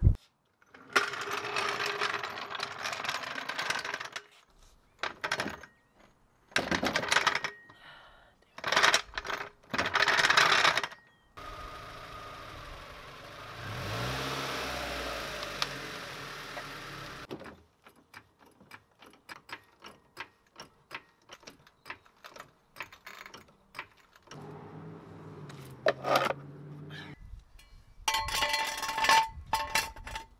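A floor jack and steel jack stands being set under a car: a run of separate bursts of mechanical clatter and clicks, a steadier stretch in the middle, and metallic clinks near the end as a stand is placed.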